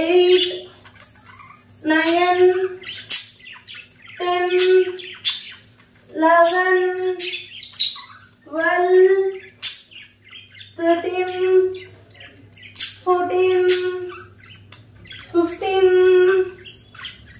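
A woman's voice counting exercise repetitions aloud, one loud drawn-out count about every two seconds.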